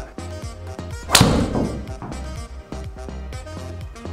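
Golf driver striking a ball: one sharp crack of the club face on the ball about a second in, over steady background music.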